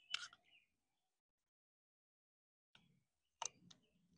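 Near silence with a few faint short clicks: one just after the start and two close together near the end.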